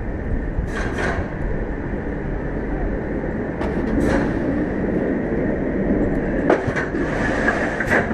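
B&M floorless roller coaster train running along its steel track, a steady rumble of wheels on rail, with brief hissing bursts about a second in, around four seconds in and again near the end as the train nears the brake run.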